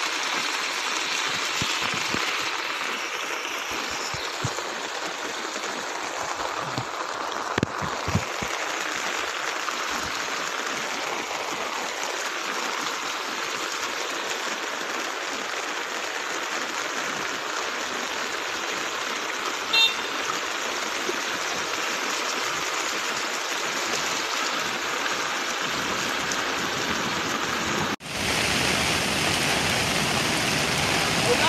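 Steady rushing hiss of heavy rain and floodwater running across a road. About twenty seconds in there is a brief high-pitched beep. Near the end the sound cuts abruptly to a louder, brighter rain hiss.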